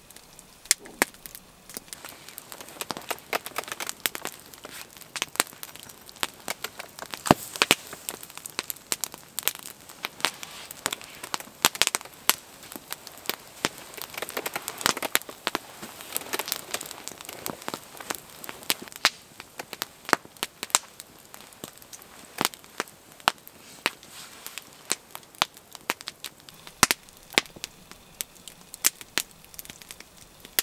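Long log fire of large stacked dry logs burning, crackling with irregular sharp pops and snaps, several a second, over a soft hiss of glowing embers.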